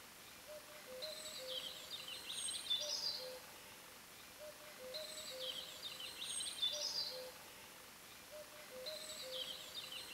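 Faint bird song: the same short chirping phrase repeats about every four seconds, over a soft steady hiss.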